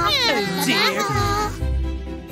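High, gliding squeals from cartoon baby voices, cooing and whining for about the first second, over background music with a steady bass beat that carries on alone afterwards.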